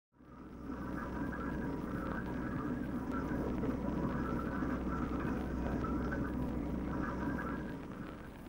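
Oatmeal bubbling in a saucepan on an electric stove, a dense run of small pops over a low steady hum, fading in at the start.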